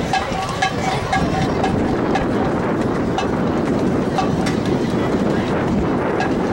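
Marching band drumline clicking sticks to keep a steady marching tempo, about three sharp clicks a second, over a steady rush of wind on the microphone.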